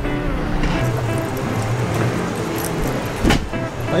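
Background music with held, stepping notes over a steady rumble of street traffic, and a short sharp knock a little after three seconds.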